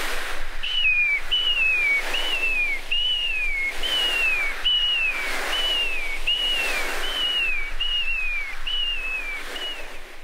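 Foley sea surf made by two clothes brushes swept over a cushion, a steady rushing wash, with whistled seagull calls on top: about a dozen short falling whistles, a bit more than one a second.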